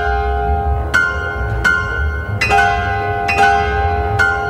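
Orchestral music from a concerto for piano and symphony orchestra: a run of loud, bell-like struck chords, one roughly every second, each left ringing over a low sustained rumble.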